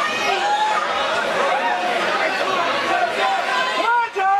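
Spectators at ringside, many voices talking and calling out over one another at once.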